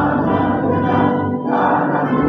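A crowd of people singing a song together in unison, with long held notes.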